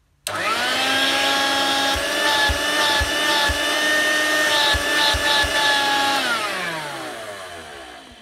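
A 1990s Dirt Devil Handy Zip corded hand vacuum is switched on and its motor runs with a steady whine. The hose is fitted directly to the impeller inlet and the brush-bar belt is removed. About six seconds in the vacuum is switched off and winds down with a falling whine. A few soft bumps come from handling the hose while it runs.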